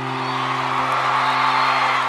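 A live band's final held chord ringing out, with audience cheering and whoops swelling over it.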